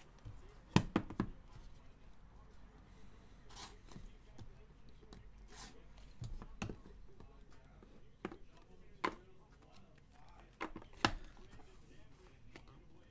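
Small cardboard card boxes being handled and set down on a trading-card box: a few sharp light clicks and knocks, a cluster of three about a second in and more near the end, with soft rustles between.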